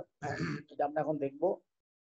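A man clears his throat, then says a few words; the voice stops about three-quarters of the way through.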